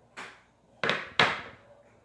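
Metal pipe-tobacco tins knocking together as they are handled and swapped: a light knock, then two louder ones under half a second apart near the middle.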